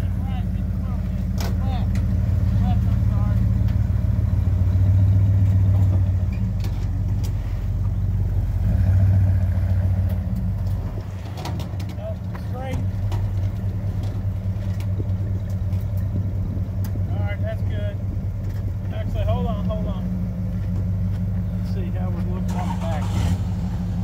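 1972 Ford LTD's engine running as the car is driven up ramps onto a car-hauler trailer and then left idling: a steady low engine note, a little louder in the first ten seconds and dropping off at about eleven seconds.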